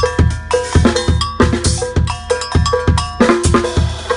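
Drum kit playing an Afro-Brazilian groove: bass drum and snare hits under a mounted double bell struck in a repeating pattern, its short ringing tones on top of the drums.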